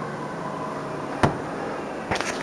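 Steady background hum with one sharp knock a little over a second in.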